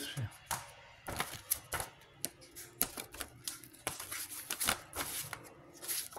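Stiff photo prints being handled and shuffled by hand: a run of irregular light clicks and paper rustles.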